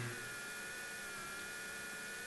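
Quiet room tone with a faint, steady high-pitched electrical hum.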